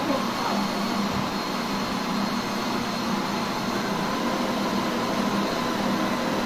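Electric countertop blender running steadily at one speed, blending a liquid pudding batter of condensed milk.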